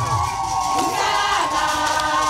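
A crowd of many voices singing together as a walking procession, with several high notes held in the second half.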